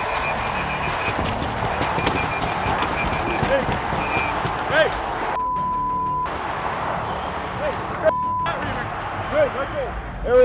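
Ice hockey arena noise from the crowd and players during a scrum in front of the net, with scattered voices. It is broken twice by a steady censor bleep, a long one about five and a half seconds in and a short one about eight seconds in, masking swearing.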